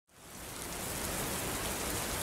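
Steady rain falling, fading in over the first half second.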